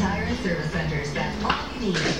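Indistinct speech from a television playing in the room.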